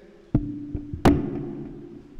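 Two sharp drum strokes, the second louder, each followed by a ringing tone that slowly dies away.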